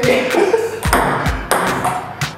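Table tennis ball clicking off the paddles and the table in a rally, a quick run of sharp hits.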